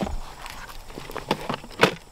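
A few short clicks and knocks of plastic tackle boxes being handled in a soft-sided tackle bag, the loudest near the end.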